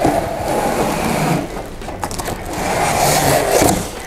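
Cardboard scraping against cardboard as an inner box is slid out of a cookware set's outer carton, in two long scrapes.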